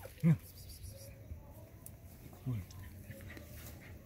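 Quiet rustling and scraping of a hand digging in soil and brush at an armadillo burrow, with one short, low, falling whine just past halfway.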